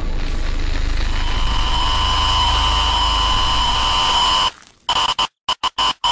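Loud static-like noise over a low hum, joined about a second in by a steady high tone. It cuts out about four and a half seconds in, then stutters on and off in short chopped bursts.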